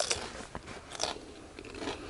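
A person biting into and chewing a crispy homemade deep-fried potato chip, with a sharp crunch at the start and another about a second in.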